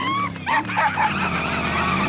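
Cartoon sound effect of a giant bug galloping off with a wagon: a steady engine-like rumble with squealing, skidding noises on top.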